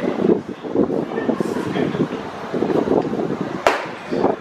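Background voices chattering, then near the end a single sharp pop as the pitched baseball smacks into the catcher's mitt.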